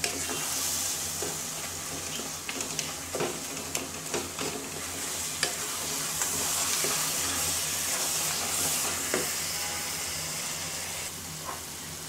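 Thick jujube pickle mixture sizzling in a pan while a wooden spatula stirs it, with scattered scrapes and taps of the spatula against the pan over a steady hiss.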